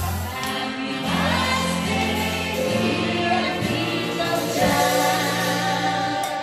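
Several singers, a woman and men, singing a song together through microphones over backing music with a steady bass line.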